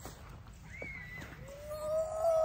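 A person's voice calling out from a distance: a short high call near the first second, then a longer drawn-out call that rises and holds from about one and a half seconds in.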